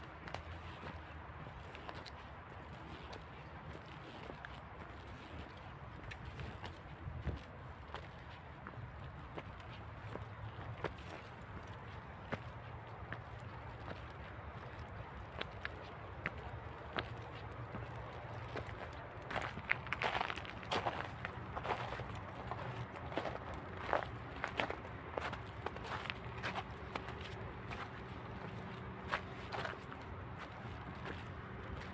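Footsteps of a person walking along a park path. From about two-thirds of the way in, the steps crunch through trampled snow and come louder and sharper.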